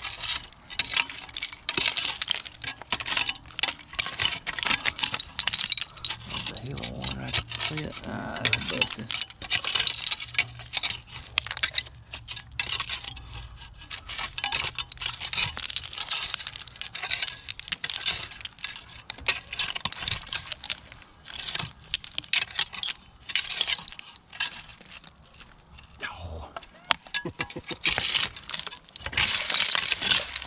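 Metal rake tines dragging through soil full of broken glass and old bottles, giving a long, uneven run of scrapes and small glass clinks, sometimes quicker, sometimes with short gaps.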